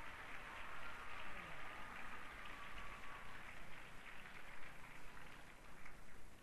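Audience applauding with a steady, dense patter of clapping.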